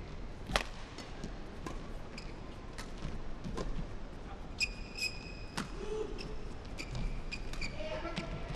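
Rackets striking a feather shuttlecock in a fast men's doubles badminton rally: sharp single hits, roughly one every second. A shoe squeaks on the court floor about halfway through.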